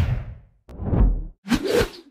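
Three whoosh sound effects in quick succession, each swelling and fading within about half a second; the middle one has a deep low thud underneath it.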